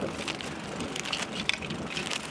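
Irregular crunching and crackling of footsteps on gravelly ground.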